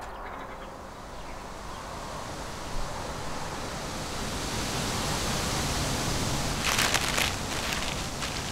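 Steady rushing outdoor ambience, like wind, slowly swelling louder, with a short burst of papery crackling about seven seconds in as sheets of paper are flung down.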